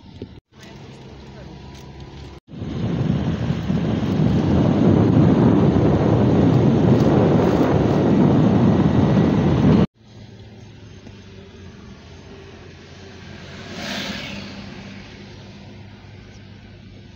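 Wind rushing loudly over a phone microphone held at the open window of a moving car, for about seven seconds from a couple of seconds in. It then cuts off suddenly to quieter steady road noise inside the car, with a brief swell near the end.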